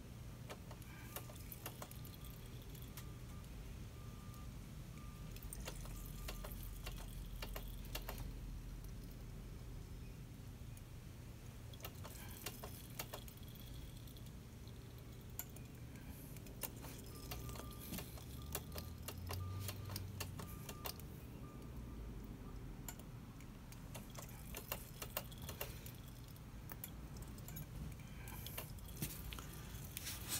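Faint scattered clicks and light ticks of hand work with a wrench at a motorcycle's rear brake bleeder valve during brake bleeding, over a low steady hum.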